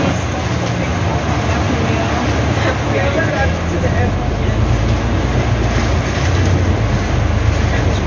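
A bus engine runs with a low steady hum under heavy rain beating on the windows, heard from inside the bus. The low hum grows stronger about halfway through.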